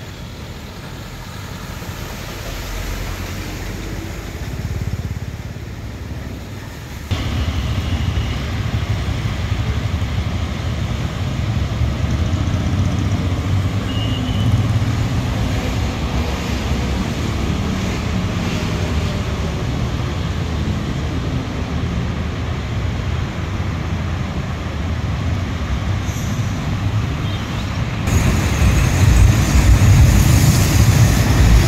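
Road traffic driving through floodwater: vehicle engines rumbling and tyres hissing and splashing through standing water. The sound steps up suddenly about seven seconds in and again near the end.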